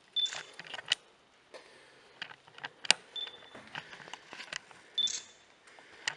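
A digital camera giving three short high beeps, each with a shutter click, as photos are taken, with scattered sharp clicks and knocks in between.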